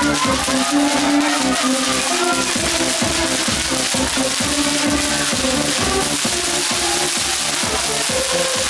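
Electronic dance music with a steady beat, over the continuous hiss and crackle of a ground fountain firework spraying sparks.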